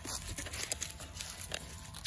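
A young pit bull scuffling and tugging at a furry raccoon hide on dry grass and fallen leaves: a busy run of rustles, crackles and small knocks.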